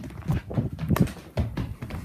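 A keeshond growling in a run of short, uneven bursts while tugging at its toy in play, the loudest about a second in.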